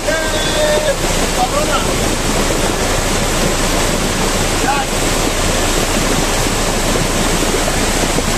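Muddy floodwater rushing across a road in a torrent, a loud, steady rush of water.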